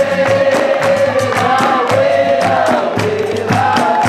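Capoeira music: a group singing in chorus, holding long sung lines, over a steady beat of hand drum and percussion.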